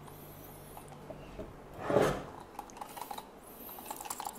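Plastic gyroball being handled while its rotor is swiped by thumb to spin it up, with a loud rubbing swipe about two seconds in and light plastic clicks after it. A faint high whine of the briefly turning rotor comes near the start and again near the end. The rotor does not catch, so this start attempt fails.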